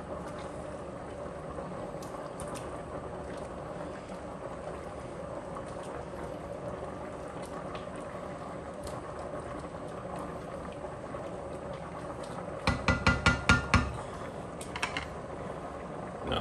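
A pot of creamy stew simmering while a spatula stirs it. Near the end comes a quick run of about eight taps, then one more, as the spatula is knocked against the pot.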